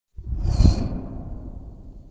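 A whoosh sound effect with a deep rumble beneath it. It swells within about half a second and then fades away over the next two seconds.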